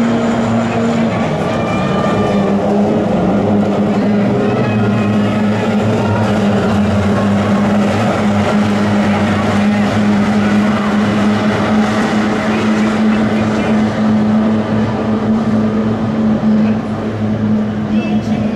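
Kyotei racing boats' two-stroke outboard motors running flat out as they race, several engines blending into one steady drone.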